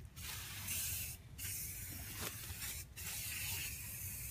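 Buck Bomb aerosol deer-scent can spraying, a high hiss in several bursts with brief breaks between as the nozzle is pressed and released.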